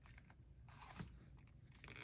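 Near silence with faint handling noise: soft creaks and small ticks as fingers press a fountain pen into a leather pen loop, with one slightly louder tick about halfway through.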